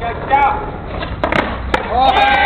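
Skateboard rolling on a hard court surface, then sharp wooden clacks of the board popping and hitting the ground as a flatground trick is tried: one cluster about a second and a quarter in and another single clack near the end.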